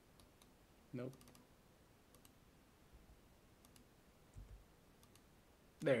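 Faint, scattered clicks of a computer keyboard and mouse as a text panel is edited, with a short spoken word about a second in and speech again at the very end.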